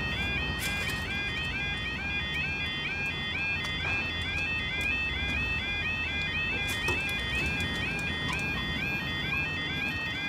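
UK level crossing yodel alarm sounding while the barriers lower: a two-tone warble stepping up and down about two and a half times a second, unbroken throughout. A low traffic rumble runs beneath it, with a few brief clicks.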